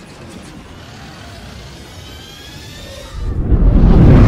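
Cinematic intro sound effects: a steady mechanical whirring noise with a faint rising whine, then a loud deep boom about three seconds in.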